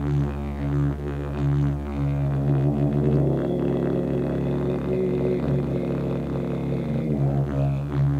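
A didgeridoo droning on one low note, pulsed in a rhythm at first. From about three seconds in, the pulsing gives way to a smoother held tone with brighter, shifting overtones, and the pulsing returns near the end.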